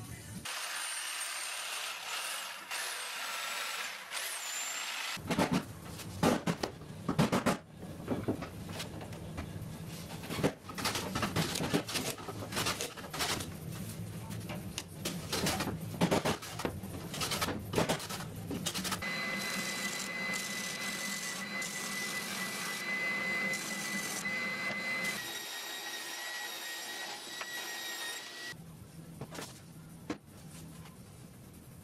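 Workshop sounds while shaping a plywood mould: first the scratch of a utility knife scoring plywood, then a run of irregular knocks and clatter as the sheet is handled and clamped, then a power tool running with a steady high whine for about nine seconds, its pitch shifting once near the end.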